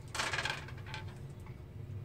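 A handful of small dice rattling as they are shaken in a cupped hand for about half a second before a roll.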